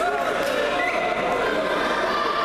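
Several voices shouting and calling at once, echoing in a large sports hall, with a dull thump or two near the start from bodies moving on the judo mat.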